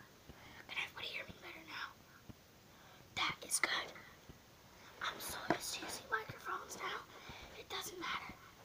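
A child whispering in short breathy phrases, close to the microphone.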